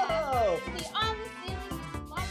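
Upbeat background music with a steady beat, with voices calling out over it in sliding whoops, one falling near the start and others rising about a second in.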